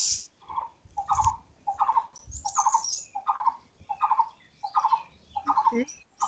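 A bird calling over and over: a short, quickly pulsed call repeated evenly about every two-thirds of a second, about nine times.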